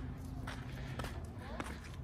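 Footsteps on asphalt, a few quiet steps about half a second apart.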